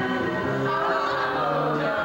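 Young women singing into handheld microphones over music, with long held notes.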